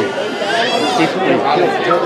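Several people talking over one another near the microphone, an indistinct steady chatter of voices.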